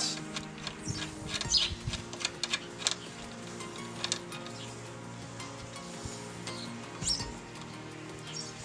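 Soft background music under scattered small clicks and scrapes of a screwdriver and steel screw, as the long retaining screw of a lock cylinder is driven into the door's lock case. The clicks come thickest in the first three seconds, with a few more later.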